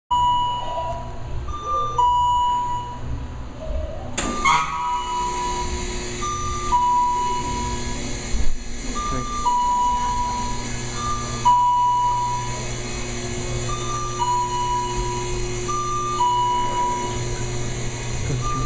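Carrier-Lift inclined platform wheelchair lift sounding its warning: a two-note high-low beep repeating about every two and a half seconds, over a steady hum. A sharp clunk comes about four seconds in, after which a steady motor tone joins.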